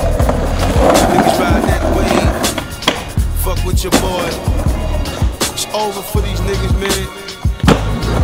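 Hip-hop track with a steady bass beat mixed over skateboarding sounds: urethane wheels rolling on concrete and several sharp clacks of board pops and landings.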